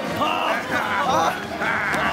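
A group of men shouting and whooping together, many short rising-and-falling cries overlapping.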